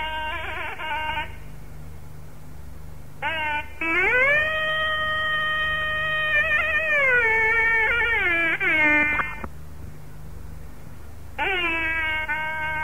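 Nadaswaram playing a Carnatic melody over a steady low drone in an old, dull-sounding live recording. A short phrase gives way to the drone alone, then a long held note begins about four seconds in and bends downward with ornamental slides near nine seconds. The melody resumes just before the end.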